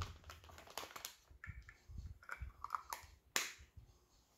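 Light clicks and taps of small plastic toiletry bottles being handled, with a sharper click about three and a half seconds in and a few faint squeaks in between.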